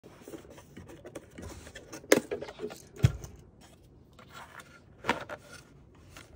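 Moulded plastic goggle case being handled and opened: sharp plastic clicks about two seconds in and again a second later, the second the loudest with a dull knock, then a further click near the end, with light rubbing and rustling between.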